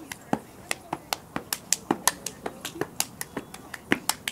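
Sharp hand claps and body slaps of a step routine, about five a second in a quick, uneven beat.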